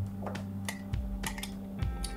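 Several small, sharp clicks and taps of hard plastic and metal as a GoPro Hero 8 Black's fold-out mounting fingers are handled and fitted onto a GoPro grip's mount, over quiet background music.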